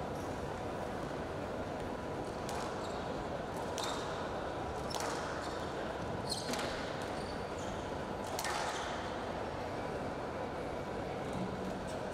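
Squash rally: rackets striking the ball and the ball hitting the court walls, about five sharp cracks spaced one to two seconds apart over steady hall noise.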